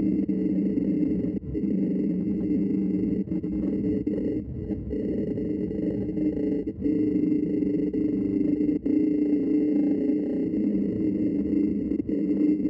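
Wood lathe running while a bowl gouge cuts the outside of a spinning pignut hickory bowl blank: a steady cutting noise over the machine's hum, broken by brief dips about a second and a half in and twice more in the second half.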